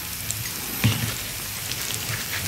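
Food sizzling on a tabletop grill plate, a steady crackling hiss, with a single knock a little under a second in.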